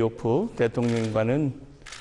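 Speech only: a man talking in Korean.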